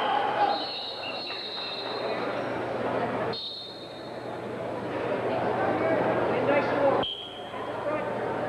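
Spectators' voices and chatter in a gymnasium, with a few faint, brief high-pitched tones; the sound drops away abruptly twice.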